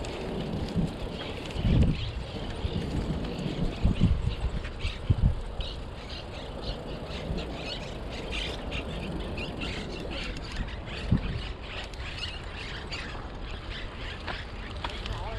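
Birds chirping repeatedly over a steady low rumble of wind and the bicycle rolling along the trail, with a few low thumps.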